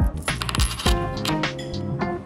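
Japanese 100-yen coins clinking together as they are handled and counted in the fingers, over background music with a steady beat.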